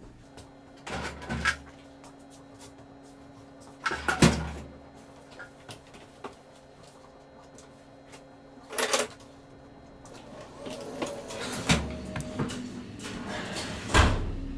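A sheet of paper being loaded into an Epson inkjet printer, with four bumps and rustles a few seconds apart over a faint steady hum, and a busier stretch of mechanical noise in the last few seconds.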